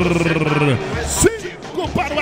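A man's voice holding one long note that falls slowly in pitch and breaks off just under a second in, followed by short broken snatches of voice, over music.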